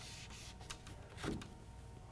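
Dry-erase marker writing on a whiteboard: faint scratchy strokes.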